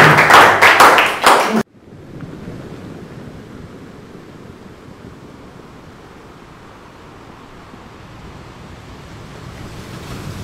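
Applause mixed with voices, cut off abruptly about a second and a half in. A steady, much quieter wash of sea surf follows and swells slightly near the end.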